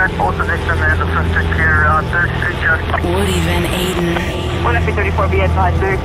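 Clipped radio voice chatter with callsign-like phrasing over music carrying a sustained low bass drone.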